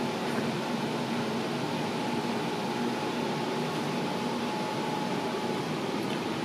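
Steady room tone: an even hiss with a faint steady hum.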